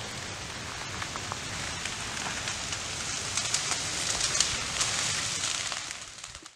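Low ground fire burning through dry leaf litter on a forest floor: a steady hiss with many small crackles and pops, which come thicker in the second half.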